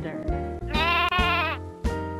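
A sheep bleating once, a wavering "baa" just under a second long, over light background music.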